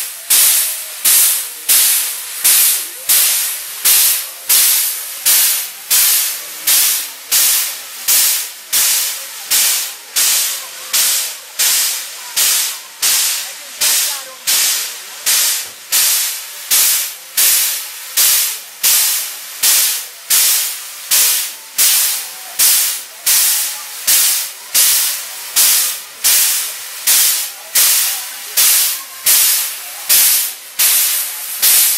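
Narrow-gauge steam locomotive letting off steam in short, even puffs of hiss, about three every two seconds.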